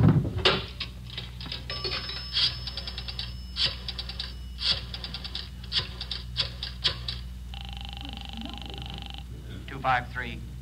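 Radio-drama telephone sound effects: groups of clicks from a rotary dial being turned for several digits, then a single ring of the line heard through the receiver, lasting under two seconds, over a steady low hum.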